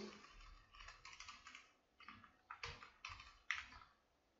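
Faint typing on a computer keyboard: scattered, irregular clusters of keystrokes.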